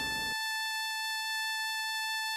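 A steady, high-pitched electronic tone with a buzzy edge, holding one pitch at an even level. A rushing noise under it cuts off suddenly a moment in.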